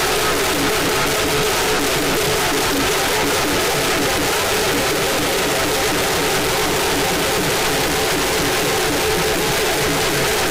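Loud Holi band music played for dancing, dense and unbroken.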